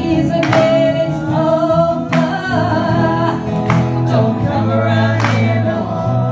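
A woman singing a pop-rock song over strummed acoustic guitar, with a strong strum about every second and a half.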